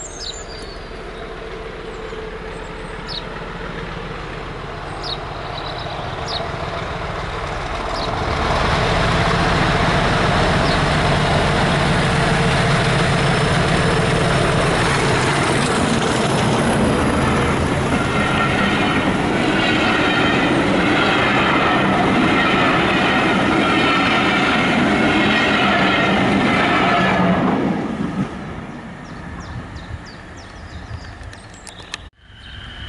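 English Electric Class 40 diesel locomotive 40106 working hard up a bank, approaching with a steady turbocharger whistle from its 16-cylinder engine, then passing loud for about twenty seconds at the head of a train of coaches. The coaches' wheels give a rhythmic clickety-clack over the rail joints in the second half before the sound falls away quickly near the end.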